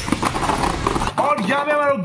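Beyblade spinning tops whirring and clashing in a plastic stadium, one knocked out against the wall: a loud rattling rush that cuts off suddenly about a second in. A man's voice follows.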